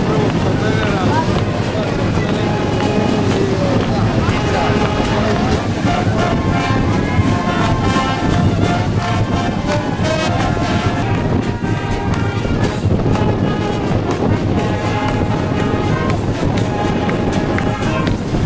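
Wind orchestra playing held brass and woodwind notes, with crowd chatter mixed in.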